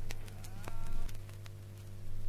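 Quiet gap in a reggae recording between songs: a steady low hum with scattered faint clicks, and a brief faint held note a little under a second in.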